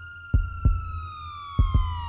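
Intro sound effect: a heartbeat-style double thump, heard twice, over a sustained synthesized tone that slowly glides down in pitch.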